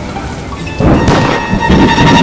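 A thunder crash about a second in, rumbling and swelling again near the end, over a steady rain-like hiss and dark trailer music.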